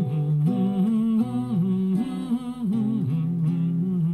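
A man humming a wordless melody that steps up and down between notes, with acoustic guitar accompaniment.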